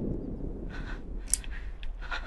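A pause in a film clip's soundtrack played over speakers in a room: a steady low hum, a few soft breathy sounds, and a brief faint click about a second and a half in.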